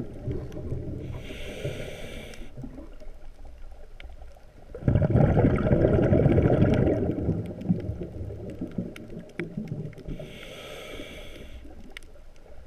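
Scuba diver breathing through a regulator underwater, heard through the camera housing: a hissing inhale soon after the start, a loud rush of exhaled bubbles about five seconds in, and another hissing inhale near the end. Faint crackling clicks run underneath.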